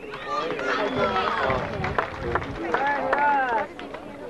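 Several voices talking over one another, with scattered small clicks.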